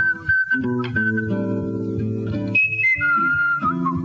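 Jazz guitar playing sustained chords under a whistled melody, the whistle holding long notes and gliding between them.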